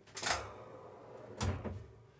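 A tall pull-out pantry cabinet being pulled open on its slides: a short rush as it starts to move, a soft sliding sound, then a sharp click about one and a half seconds in.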